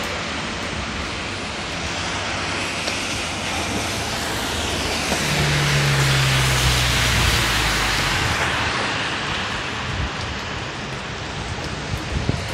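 Heavy rain falling steadily on pavement and a wet road. About midway a car passes on the wet road, its tyres hissing through the water and a low engine hum swelling and then fading.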